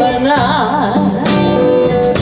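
A live blues band playing: electric guitars and drums, with a woman singing wavering notes over them and a held note near the end.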